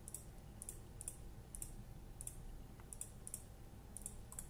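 Faint computer mouse button clicks, about eight single clicks at irregular intervals.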